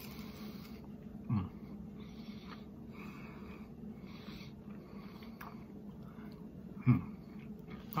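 A man chewing a mouthful of crunchy breaded buffalo chicken bite, with soft chewing noises and two short throaty hums, about a second and a half in and near the end.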